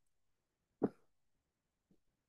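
One short vocal sound from a person, lasting a fraction of a second, about a second in; otherwise near silence.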